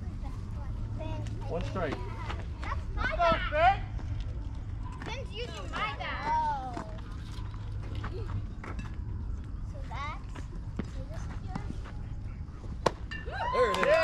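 Voices shouting and calling out across a youth baseball field, in several short bursts over a steady low rumble of background noise. A single sharp knock comes near the end.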